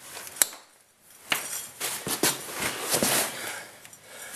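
Metal clinks and scraping of a 17 mm wrench on a swingarm bolt of an ATV as it is pushed loose with a boot: a single sharp click about half a second in, then from about a second and a half in a run of irregular clinks and rasping.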